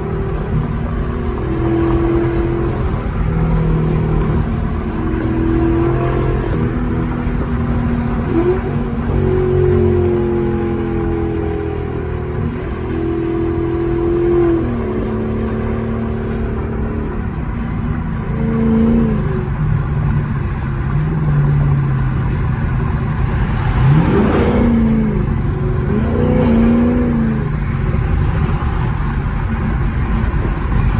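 A sixth-generation Camaro SS's LT1 V8, fitted with headers and a cold air intake, heard from inside the cabin at highway speed. It gives a steady drone over road rumble. About three-quarters of the way through, its pitch sweeps quickly upward as it revs.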